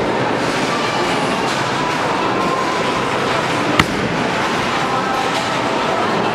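Bowling alley din: a steady rumble of bowling balls rolling down the wooden lanes, with a single sharp crack a little before four seconds in.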